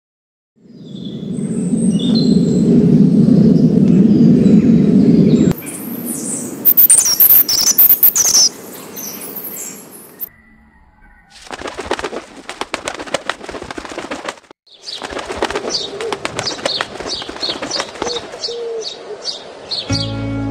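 Bird sounds in several cut-together pieces: a loud low rumble for the first few seconds, then high chirps and rapid fluttering, ending with a run of quick, high repeated notes.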